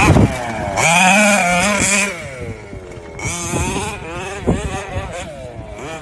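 HPI Baja 5B's two-stroke petrol engine revving up and down as the buggy is driven. The hardest, loudest run comes about a second in, then it eases off with several shorter rises in pitch.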